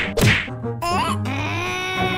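Cartoon sound effects: a whack as the character lands on the cones, then from about a second in a held, slightly wavering cartoon voice-like tone.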